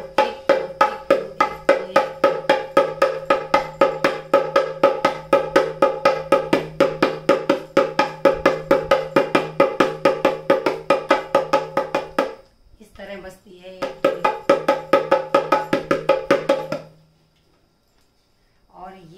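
Dholak's smaller finger-side head struck with alternating fingers in a fast, even stream of ringing strokes, about five a second. The strokes stop about twelve seconds in, then start again for about three seconds before stopping near the end.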